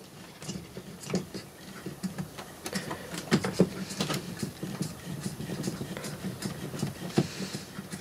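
A small inkjet printer's ink pump runs with a low steady hum and irregular ticking clicks, pushing ink so that the printhead bleeds.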